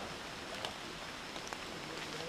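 Tropical forest ambience: a steady faint hiss with a few soft ticks.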